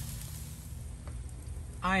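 Ribeye steaks sizzling on hot grill grates, a steady hiss over a constant low rumble. A man's voice starts just before the end.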